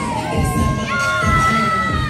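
Children shouting and cheering over a hip-hop track with a steady beat, with a long high cheer about halfway through.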